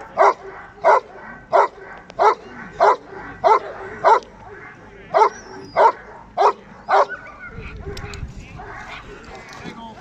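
A Dobermann barking steadily at a helper holding a bite sleeve, guarding him in a bark-and-hold exercise. About eleven loud barks come evenly, roughly one every two-thirds of a second, with a short pause midway; the barking stops about seven seconds in.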